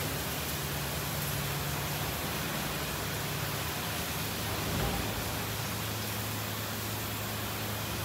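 Ryko SoftGloss MAXX 5 soft-touch rollover car wash at work: a steady hiss of water spray and spinning cloth brushes over a low motor hum, which drops a little in pitch about two seconds in.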